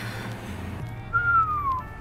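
A man whistles one short note that slides down in pitch, about a second in, over quiet background music.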